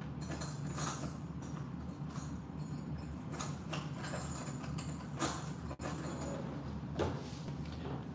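Scattered clicks, knocks and rustles of small objects being handled, over a steady low hum.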